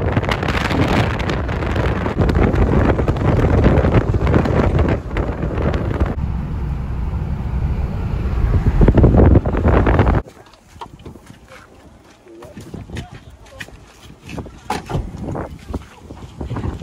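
Wind and road noise inside a moving Jeep Wrangler, a loud low rumble with wind buffeting the microphone, cutting off suddenly about ten seconds in to a much quieter outdoor stretch with faint scattered sounds.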